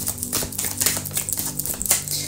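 A tarot deck being shuffled hand to hand: a quick, irregular run of soft card clicks and slaps. Quiet background music with steady low notes runs underneath.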